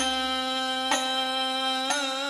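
A male voice holding one long, steady sung note of an Islamic devotional song (qasidah/sholawat) into a microphone, with two hand-drum strikes about a second apart.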